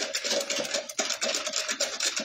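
Wire balloon whisk spun between the palms in a plastic measuring jug, beating egg into milk. Its wires rattle against the jug in a rapid, even run of clicks, several a second.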